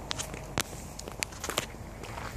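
Irregular sharp clicks and light taps, about six in two seconds, the loudest just over half a second in, over a steady low background hiss.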